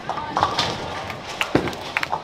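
Bowling center din: a run of sharp wooden clacks and knocks of balls striking pins and pins clattering, the loudest about a second and a half in, over a steady background murmur.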